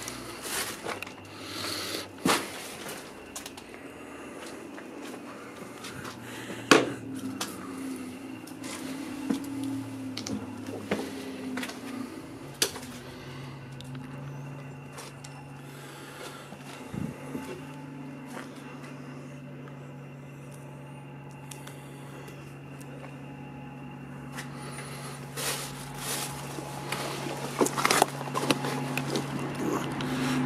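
Scattered footsteps, scuffs and knocks on concrete and rubble inside a small concrete air raid shelter. A low steady hum comes in about seven seconds in.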